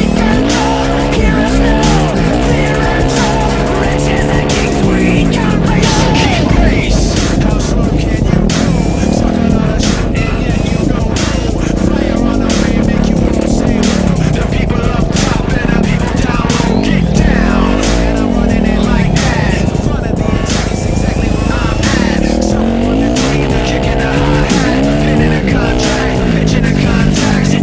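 Dirt bike engine revving up and down over and over as the rider accelerates and shifts around a dirt track, with music mixed in.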